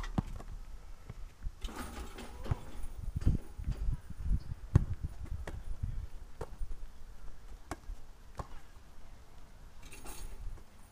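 Scattered, irregular thuds and knocks of a ball being played and of running feet on an artificial-turf court, spaced about a second apart.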